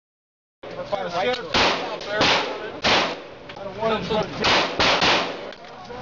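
Gunshots at an indoor shooting range, about six single shots in two groups of three, each followed by a booming echo off the range walls. A man's voice can be heard between the shots.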